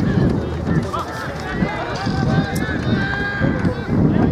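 Several voices shouting and calling over one another from players and spectators on a rugby field, with no single voice standing out.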